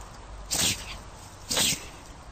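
Small white dog playing with a stick, giving short, sharp vocal bursts about once a second, two of them here.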